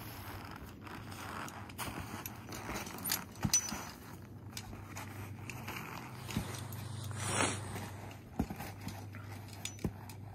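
Scattered light clicks and rustling of climbing hardware as a rope ascender is pushed up a fixed rope and cinched tight, with one brief louder swish about seven seconds in.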